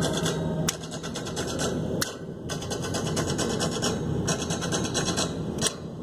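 Road and wind noise of a car driving, a rough steady rushing, with three brief dips in level.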